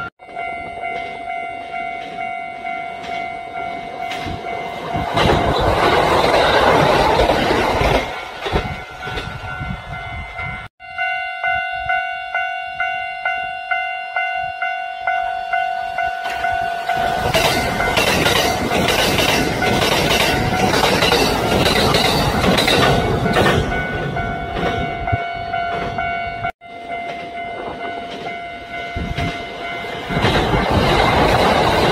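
Kintetsu electric trains passing close by, their wheels clacking rhythmically over the rail joints, loudest in two passes a few seconds in and again in the middle. A steady ringing tone runs under much of it, and the sound cuts off abruptly twice as one clip gives way to the next.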